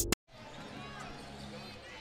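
Intro music cuts off abruptly, and after a short gap comes faint basketball-arena ambience: a low murmur of distant voices during a game.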